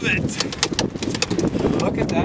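A brown trout landed in a landing net and set down on a boat deck: a run of short sharp knocks and slaps as the fish thrashes and the net hits the boat, over steady wind noise, with a brief exclamation at the start.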